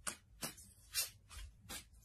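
Tarot cards being handled and drawn from the deck: about five short, quiet card flicks and rustles, the loudest about a second in.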